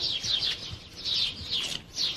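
Small birds chirping in the background, short runs of quick high chirps, each dropping slightly in pitch.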